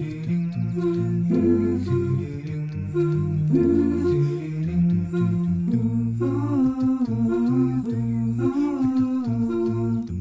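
Vocal-only background music: voices carry a melody with several notes sounding at once, and no instruments are heard.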